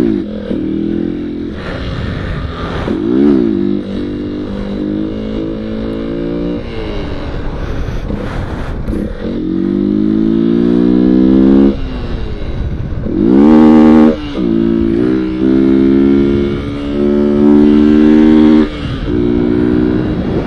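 Motorcycle engine under hard throttle during wheelies. The revs climb, drop away and climb again several times, with stretches held high in between, and the loudest rise comes about two-thirds of the way through.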